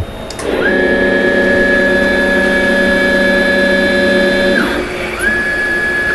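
Small CNC mill running a test program: its spindle and axis motors set up a steady mechanical whine of several tones that rises in within the first second. Near the end the higher whine falls away as one move finishes, then rises again as the next move starts.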